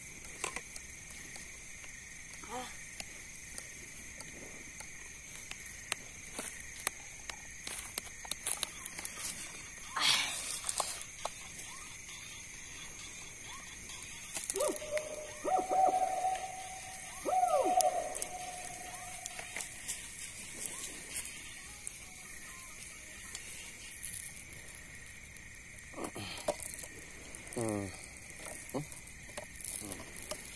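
A steady chorus of night insects trilling at two high pitches, with faint scattered crackles from the charcoal fire under the grilling fish. A few short voices come and go.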